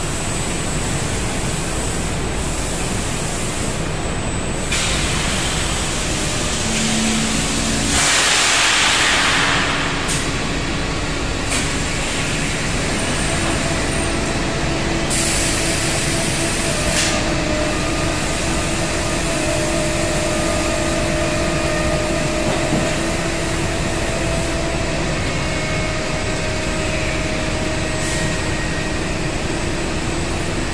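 Foundry pouring machine and molding line running: a steady, loud mechanical rumble with bursts of hissing, a long one about a quarter of the way through and a shorter one about halfway.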